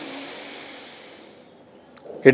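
Breath hissing in through one nostril during alternate-nostril breathing (nadi shodhana pranayama), the other nostril held shut by the fingers. It fades away over about a second and a half.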